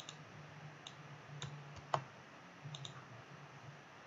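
Faint, scattered clicks of a computer mouse and keyboard, about half a dozen, the sharpest about two seconds in.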